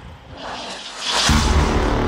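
Title-sequence music sting: a whoosh that swells for about a second, then a sudden deep boom about a second and a quarter in, ringing on as a sustained low chord.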